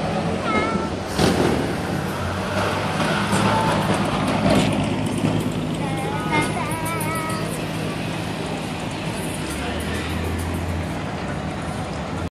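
Street noise of cars cruising slowly and idling, with a low steady engine hum, mixed with music and voices. There is a louder burst about a second in.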